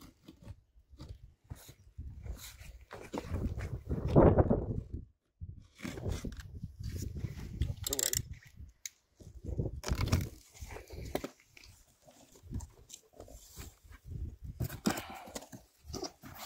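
A cardboard box being slit open with a utility knife: the blade dragging through the packing tape, then the tape tearing and the cardboard flaps being pulled open, with scattered scrapes and rustles. A short vocal sound stands out about four seconds in.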